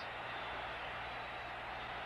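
Steady background hiss with a faint low hum, the noise floor of an old film soundtrack.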